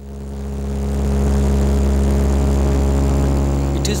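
Turboprop airliner's engines and propellers droning steadily, heard from inside the cabin: a deep hum with a steady stack of tones above it, fading in over the first second.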